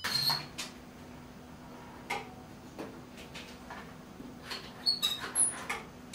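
An electric heat-treating oven being set: a few light clicks from its controls, with short high tones near the start and again near the end, over a faint steady hum.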